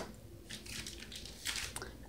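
Quiet room with faint handling noise and a few soft clicks as a gas range's control knobs are turned and checked, about half a second and a second and a half in.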